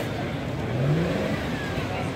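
A car engine revs once, its note rising about half a second in, over the chatter of a crowd.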